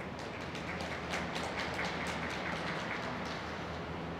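Audience clapping: many scattered hand claps that start just after the skater's final pose and die away after about three seconds, over a steady low hum.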